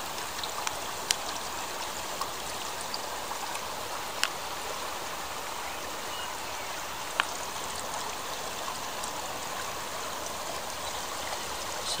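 Shallow stream running steadily, with a few sharp little splashes as a freshly dug pignut tuber is rinsed in the water by hand.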